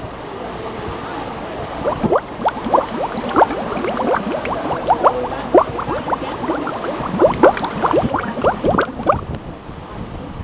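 Water gurgling and bubbling over a steady rush. Many quick rising blips crowd in from about two seconds in and thin out near the end.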